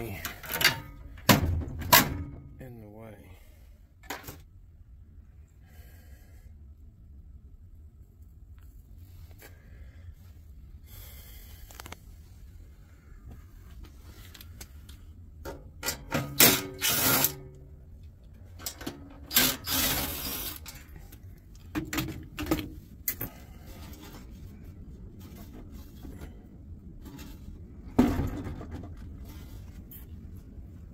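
Knocks, clicks and clatter of hands and tools working on a steel server-cabinet chassis as it is taken apart for scrap, with two clusters of louder, harsher noise midway and a sharp knock near the end.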